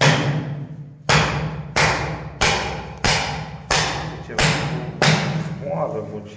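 A hand tool strikes and scrapes repeatedly at old, crumbling layers being stripped off a surface, about one and a half blows a second. Each blow is a sharp thud followed by a rasping tail that fades over about half a second.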